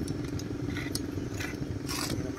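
Small two-stroke grass-trimmer engine idling steadily, with a few light clicks and rattles over it.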